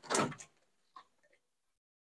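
A short scrape and rattle as a long flexible heater hose is pulled free, followed by a faint tap about a second in.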